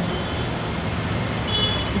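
Steady hum and hiss of street traffic, with a faint short high beep about one and a half seconds in.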